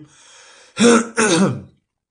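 A man clears his throat in two short, loud bursts about a second in, after a faint breath.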